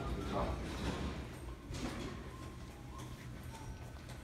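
Quiet room tone with a steady low rumble and light handling noise, plus a few faint distant tones in the middle.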